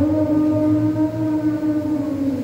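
Congregation singing a hymn, holding one long note that steps up in pitch right at the start.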